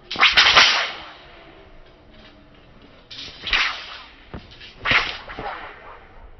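A wushu broadsword and the silk scarf on its hilt swung hard through the air, making three loud whip-like swishes a couple of seconds apart, with a sharp click just before the third.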